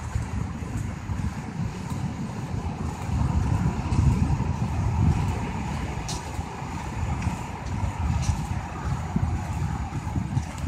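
Wind buffeting the microphone in a fluctuating low rumble, over the steady wash of surf breaking on the beach.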